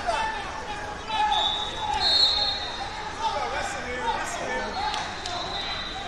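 Wrestling shoes squeaking again and again on the mats, mixed with voices around the hall. A high steady tone sounds twice, each for about a second.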